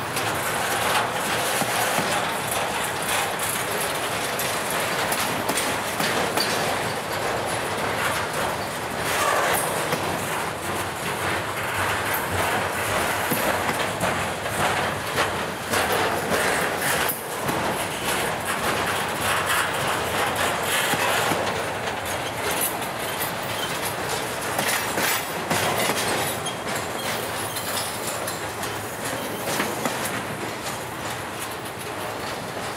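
Intermodal freight cars rolling past: a steady rumble of steel wheels on rail, with rapid clicking as the wheels pass over the rail joints.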